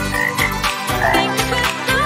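Cartoon frog croak sound effects, a few short croaks, over backing music with a steady beat.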